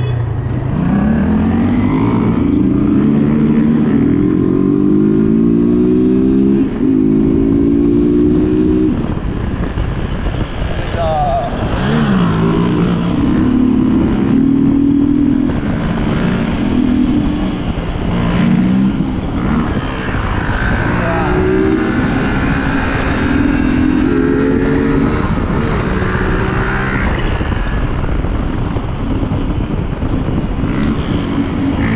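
Motorcycle engines under way, the rider's own bike accelerating with its pitch climbing for several seconds, a brief break about seven seconds in like a gear change, then engine pitch rising and falling with the throttle as the group rides along.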